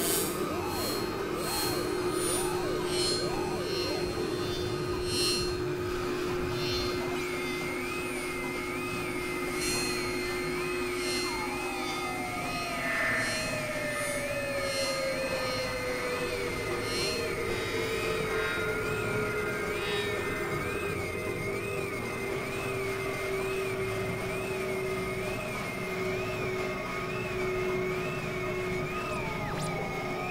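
Layered experimental electronic music of drones and synthesizer tones over a noisy bed. Clicky pulses come in the first few seconds, a high warbling tone enters about seven seconds in, and a long, slowly falling tone starts about eleven seconds in.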